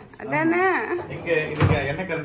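A high voice speaking, with one short dull knock about three-quarters of the way through.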